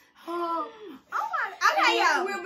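Speech only: girls' voices talking, with a short gap about a second in.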